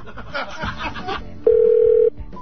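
A telephone line tone: faint voices over the phone line, then about one and a half seconds in a loud, steady single tone sounds for about half a second.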